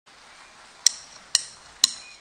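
Drummer's count-in on the drum kit: three sharp, ringing metallic clicks evenly spaced about half a second apart, marking the tempo just before the band comes in.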